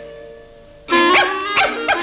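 Cartoon small dog yapping in quick, high yips, starting suddenly about halfway through after a brief lull, with music playing along.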